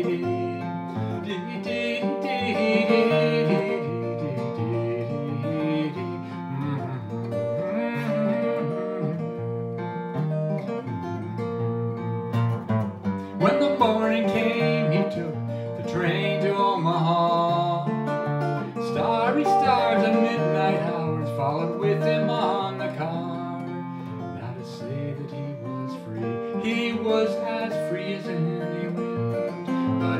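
Small-bodied acoustic guitar played solo in an instrumental break of a folk song.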